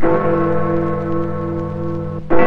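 A single deep clock-tower bell stroke that rings on steadily for about two seconds: the castle clock tolling the hour.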